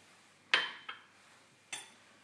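Sharp ceramic clinks from a small ceramic dish against a ceramic bowl and the stone counter as the dish is set down. The loudest is about half a second in, followed by a faint one and another near the end, each ringing briefly.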